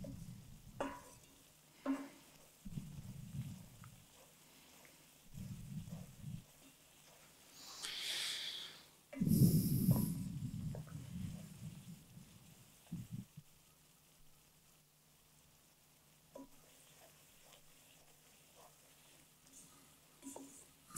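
Wooden spoon stirring almonds in a simmering sugar-and-water mixture in a pan, quiet overall, with a few scrapes and clicks against the pan and a short sizzling hiss about eight seconds in. The syrup is cooking down, its water evaporating before it caramelises.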